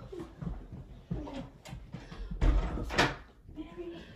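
A heavy thump about two and a half seconds in, followed by a short rustling swish, under brief low voices.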